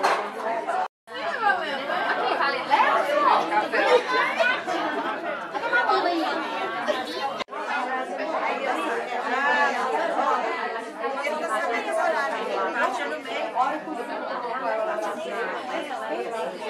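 Many people talking at once: steady overlapping conversation and chatter, broken twice by a very brief dropout.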